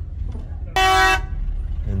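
A car horn sounds one steady blast of about half a second, about a second in, over the steady low rumble of a car driving, heard from inside its cabin.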